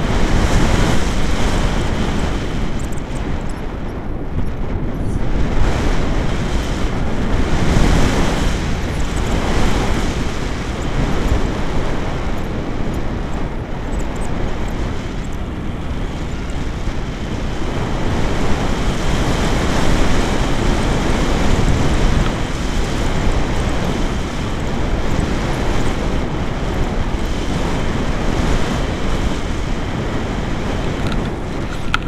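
Air rushing over the microphone of a camera on a paraglider in flight, a loud steady rush of wind noise that swells and eases every few seconds.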